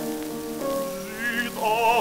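Old shellac record of a baritone singing with piano: held piano notes, then the singer's voice comes back in with wide vibrato about a second in. Surface crackle and hiss from the disc run underneath.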